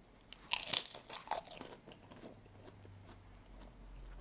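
A mouthful of crispy Thai rice cracker (khao kriap) topped with green curry being bitten and chewed. There are a few loud crunches about half a second to a second and a half in, then softer crunching chews that fade out.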